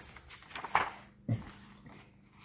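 A page of a hardcover picture book being turned by hand, paper rustling, with a brief high squeak-like sound partway through and a short soft low sound just after.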